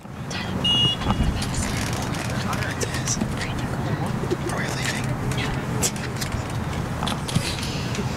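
Open-air soccer-field ambience: a steady low rumble of wind and passing traffic, with faint distant shouts from the pitch. A brief high whistle sounds about a second in.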